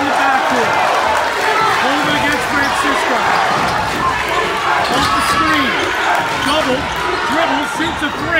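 A basketball being dribbled on a hardwood gym floor, under the loud shouting and yelling of a packed crowd of spectators.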